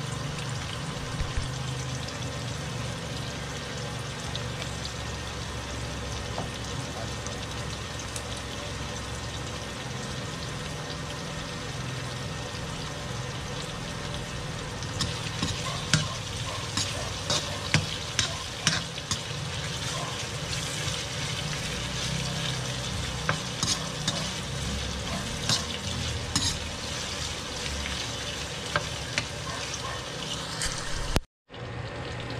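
Sliced onion and aromatics frying in oil in a metal wok, a steady sizzle. From about halfway on, a metal spoon stirs them, scraping and clinking sharply against the wok.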